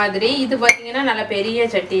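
Small terracotta oil lamps (diyas) knocking against one another as they are handled, with one sharp clink a little under a second in.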